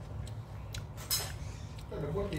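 Plastic spoon scraping and clinking against a bowl while scooping, a few light clicks with the sharpest about a second in, over a steady low hum.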